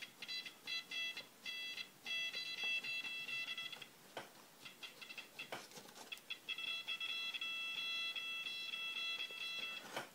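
Corona DS939MG digital servo buzzing with a high-pitched whine as it holds its position against a hand pushing its arm in a gear-slop test: short pulses at first, then two longer steady stretches, with a few clicks in between.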